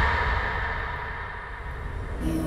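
A low rumbling drone from a horror film soundtrack, dying away slowly with a faint high tone fading out.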